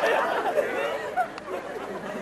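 Indistinct background chatter of several voices, a steady murmur with no clear words.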